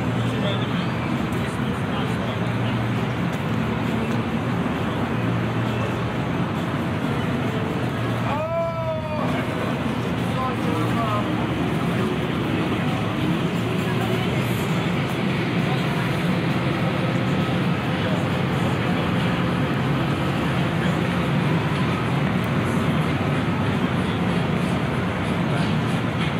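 Steady city ambience: traffic hum from the surrounding streets with the chatter of people passing by. About nine seconds in, a short pitched sound slides up and down.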